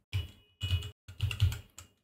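Typing on a computer keyboard: a quick run of key presses in several short clusters.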